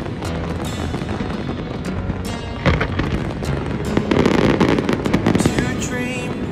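Fireworks shells bursting and crackling in rapid succession, with a sharp bang a little under three seconds in and a dense run of bursts in the last two seconds, with music playing underneath.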